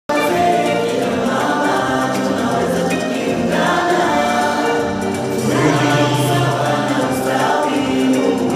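A choir singing, many voices together holding long notes in a steady, continuous song.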